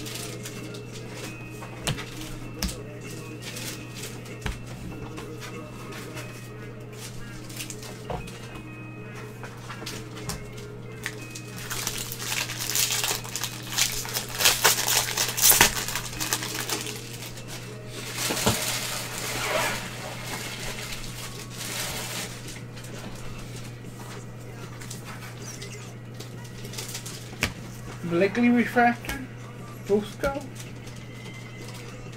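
Trading-card pack wrapper crinkling as it is handled and torn open, in two long stretches about halfway through. Around it come light clicks of cards being flipped through by gloved hands, over a steady low hum.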